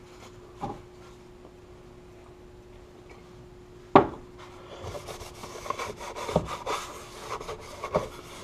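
A rag wiping and scrubbing over a freshly sanded, primed plastic dash console to clean off sanding dust with alcohol before the next coat of primer. The rubbing strokes start about halfway through, after a quiet stretch broken by one sharp click, over a faint steady hum.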